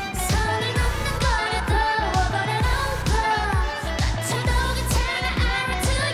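K-pop girl group singing live over a dance-pop backing track with a steady drum beat.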